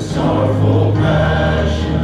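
Live praise-and-worship music: a band with keyboard and guitars playing under several voices singing together, with sustained notes and the bass note changing about a second in.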